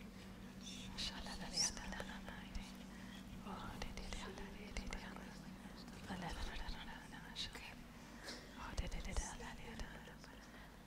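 Faint whispering and low scattered voices of a congregation speaking quietly to one another, over a steady low hum.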